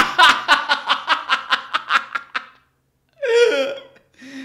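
A man laughing hard: a quick run of ha-ha bursts, about five a second, that fades out after two and a half seconds, followed by one short vocal sound near the end.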